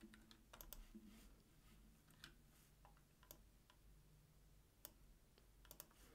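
Faint, scattered clicks of a computer keyboard and mouse, single clicks about once a second with short clusters near the start and near the end.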